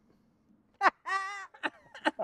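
Men's voices reacting to the outcome of a game of rock, paper, scissors. There is a short sharp yelp, then a held, slightly falling high-pitched cry, then the first bursts of laughter near the end.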